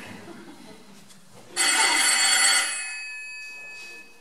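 Telephone ringing once: a single ring starts suddenly about a second and a half in and rings on as it fades away.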